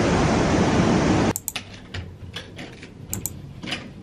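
Loud, even rushing noise of a busy station hall, which cuts off suddenly about a second in. What follows is a quiet corridor where a hotel room door's lock and handle give several sharp clicks and taps.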